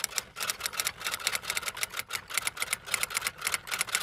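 Typing sound effect: a fast, even run of key clicks, about nine or ten a second, accompanying text being typed out on screen.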